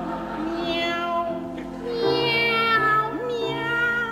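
Two operatic sopranos singing a duet in turn, one voice answering the other, over a piano accompaniment; a short upward vocal slide comes about three seconds in.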